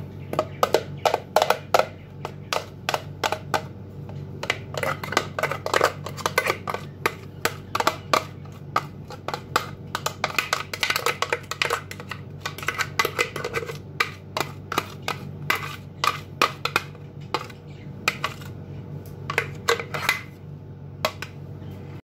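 Thick cream being emptied from a plastic container onto biscuits in a glass baking dish, with many irregular clicks and taps of the container against the dish. A steady low hum runs underneath.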